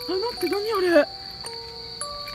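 A woman's startled exclamation in the first second, over soft background music, with a steady high-pitched drone of night insects throughout.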